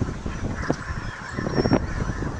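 Gusty wind buffeting the microphone, getting louder right at the start, with a higher sound over it from about half a second in and a few short sharp sounds.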